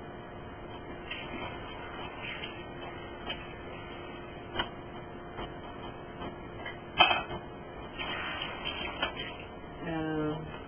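Kitchen handling sounds: a few scattered knocks and clicks of utensils and containers, the loudest about seven seconds in, with soft rustling and a faint steady hum underneath.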